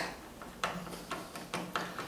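Hand screwdriver turning a light switch's mounting screw into a plastic electrical box: a few light, irregular ticks of the tip working the screw.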